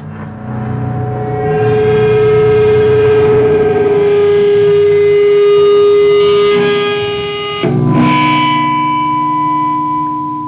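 Distorted electric guitar droning on long held notes through the amplifier: one wavering note held for about six seconds, then a new sustained chord about eight seconds in, with no drums yet.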